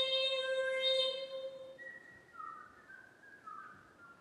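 A vocal sextet holds a steady overtone-sung chord, with bright, whistle-like high partials above the sung tone. About two seconds in, the chord thins out and grows quieter, leaving softer high voice tones that slide briefly.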